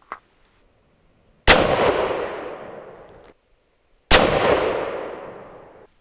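Two rifle shots from a sporterized Arisaka Type 30 carbine rebarreled to .257 Roberts, firing handloaded rounds. Each is a sharp crack followed by about two seconds of fading echo, and the first echo cuts off suddenly.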